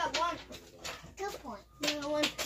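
Children's voices talking quietly and indistinctly in short snatches; no other sound stands out.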